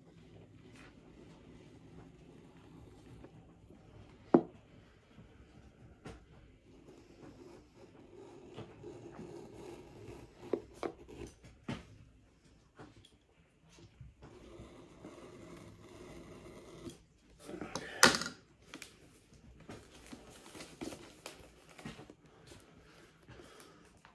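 Plastic shrink wrap being cut along the bottom of a cardboard box: faint scratching and scraping, a sharp click about four seconds in, and a louder burst of rustling plastic about eighteen seconds in.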